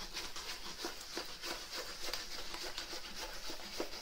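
Diamond painting canvas being rolled up by hand on a tabletop: a steady run of light, irregular crinkling and rustling.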